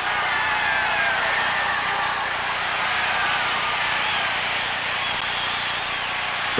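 Large baseball stadium crowd cheering, a dense, steady roar of many voices.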